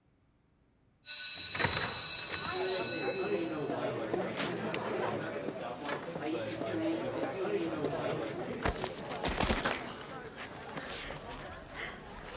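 An electric school bell rings for about two seconds, starting suddenly about a second in after near silence, then gives way to the chatter of many students' voices with a few sharp knocks.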